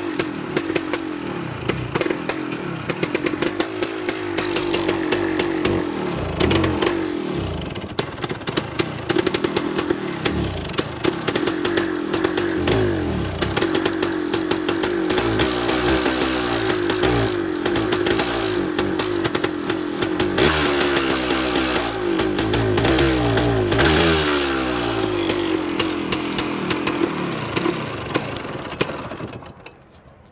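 Two-stroke single-cylinder engine of a 1978 Yamaha DT 125 MX running, its revs wandering up and down, with many sharp clicks, fading out near the end. It is running badly off the choke, a fault that adjusting the carburettor's air/fuel screws has not cured.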